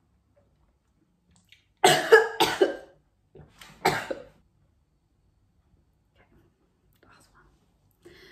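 A woman coughing: two hard coughs in quick succession about two seconds in, then one more a second later, with the sour lemon juice she has just eaten stinging her throat.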